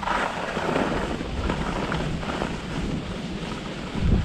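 Wind rushing over a pole-mounted GoPro's microphone during a downhill ski run, with a continuous low buffeting rumble and the hiss of skis sliding over packed snow.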